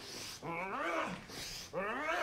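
Two strained, wordless yells from men grappling in a fight, each rising then falling in pitch: one about half a second in, the other near the end.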